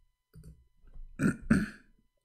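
A man coughing twice in quick succession, after a couple of softer throat sounds.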